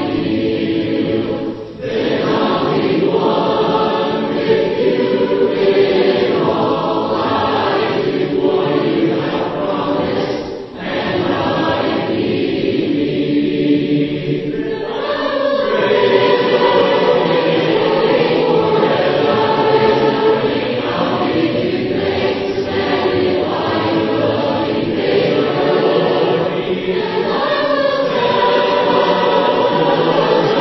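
A group of voices singing a hymn in four-part harmony: the last verse, then, about halfway through, the chorus at a faster pace.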